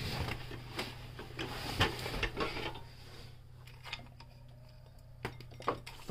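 Hands rummaging through a cardboard box of household objects: rustling with light knocks and clicks, busiest in the first half, then quieter, with a couple of sharp clicks near the end.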